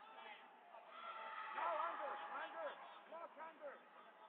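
Several voices calling out and shouting over one another, loudest between about one and two seconds in.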